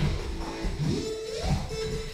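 Instrumental background music with a held note and sliding pitches.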